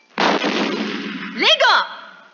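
A cannon-blast sound effect: a sudden loud burst that dies away over about a second. It is followed near the end by a short two-part voice-like call.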